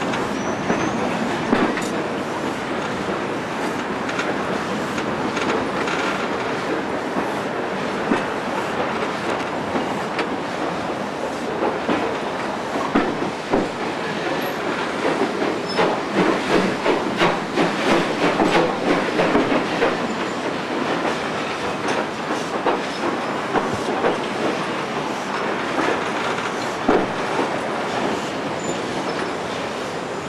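Train coaches rolling on the rails, heard from a carriage window: a steady rumble with wheels clicking and clattering over rail joints. The clatter is loudest and busiest in the middle.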